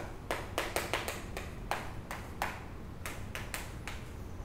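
Chalk writing on a chalkboard: an irregular run of sharp taps and short scratchy strokes, about three a second, as letters are written.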